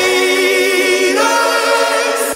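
Pop song passage of layered, choir-like vocals holding long notes over sparse backing, with almost no bass or drums. The chord steps up in pitch about a second in.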